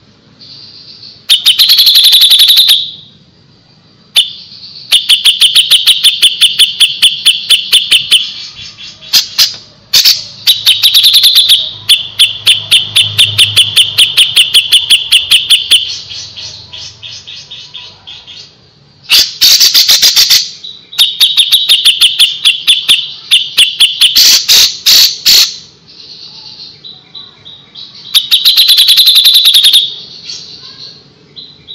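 Grey-cheeked bulbul (cucak jenggot) singing loudly in fast, tightly packed runs of repeated high notes. The song comes in phrases of one to four seconds, with short pauses between them.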